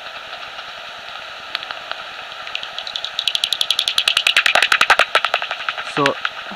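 Heterodyne bat detector (Magenta Bat 4) tuned to 55 kHz: a steady hiss, and from about halfway through a soprano pipistrelle's echolocation calls come in as a rapid, even train of sharp clicks, about ten a second, loud and clear as the bat passes.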